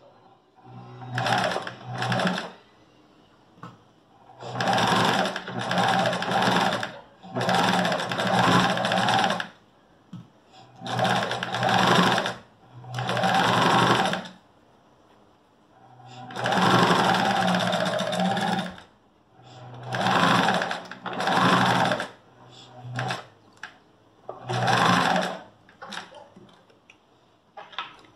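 Small domestic electric sewing machine stitching a seam in repeated runs of one to several seconds, stopping briefly between runs while the fabric is guided. The seam closes a side pocket and is started and finished with backstitching.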